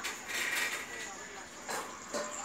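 Audio of a cartoon video playing through a tablet's small speaker: a loud, harsh noisy burst for most of the first second, then a short sharp knock near the end.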